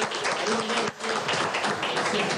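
Hand clapping from a small room of people, a steady patter of applause with men's voices talking over it.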